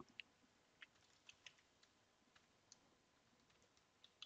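Faint computer keyboard keystrokes: about eight sparse, irregular taps, otherwise near silence.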